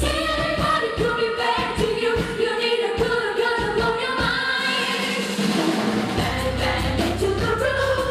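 Female pop singer performing live with a backing band: she holds one long sung note through the first half over drum hits, then the melody moves on with the bass and drums underneath.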